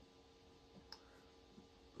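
Near silence: room tone with a faint steady hum, and one short faint click a little under a second in.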